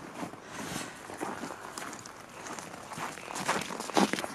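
Footsteps crunching through packed snow at a steady walking pace.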